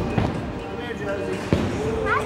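Two heavy thuds of bowling balls on the lanes, the second sharper and louder about one and a half seconds in, over indistinct voices.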